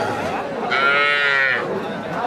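A calf mooing once, a single call of nearly a second beginning about a third of the way in, over the chatter of a crowd.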